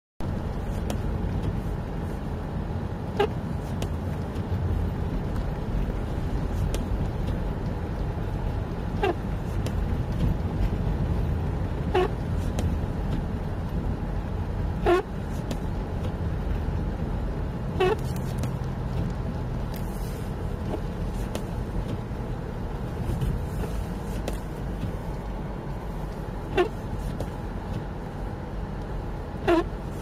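Steady low rumble of a car's engine and tyres on a snow-covered road, heard inside the cabin. Short pitched squeaks, most likely from the windscreen wipers, come about every three seconds.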